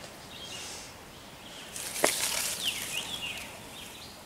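Dry leaf litter rustling and crackling for about a second, starting with a sharp snap about two seconds in, over a quiet woodland background.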